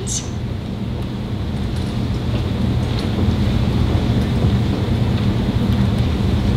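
Steady low rumble with a hum underneath: the background noise of the room and its sound system, with no voice over it.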